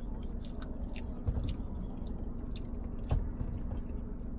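A person chewing a mouthful of food, with many small wet mouth clicks, over a steady low hum. Two soft low thumps come about a second in and near the end.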